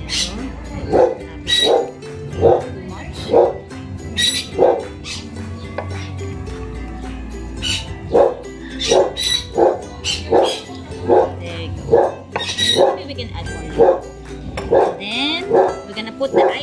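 A dog barking over and over, about once a second, with a pause of a few seconds midway.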